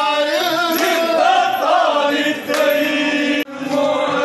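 Group of men singing a traditional Vanchipattu boat song in chorus, with long held notes that slide in pitch. The singing breaks off briefly about three and a half seconds in.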